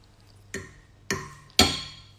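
Three sharp percussive hits about half a second apart, each louder than the last, each with a brief ringing tail.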